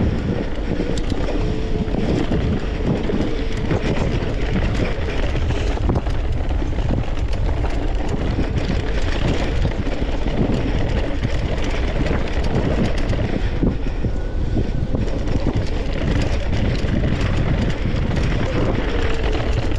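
Wind buffeting the microphone of a camera riding along on a mountain bike, a steady deep rumble, with frequent small clicks and rattles from the bike over rough ground.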